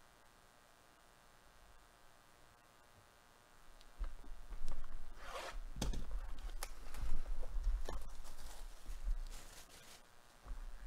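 Near silence at first; then, from about four seconds in, hands handling a cardboard trading-card box and tearing open its wrapping, with rustling, scraping and several sharp crackles.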